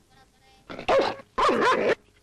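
A dog barking: two loud, drawn-out barks in the second half.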